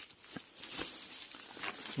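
Faint, irregular crackles and rustles of footsteps through dry fallen leaves, a few soft crunches scattered through the pause.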